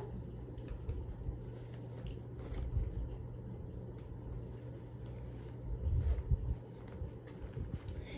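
Faint handling noises: plastic highlighters clicking and rustling as they are put into a zippered pencil pouch, with a couple of slightly louder knocks. A steady low hum runs underneath.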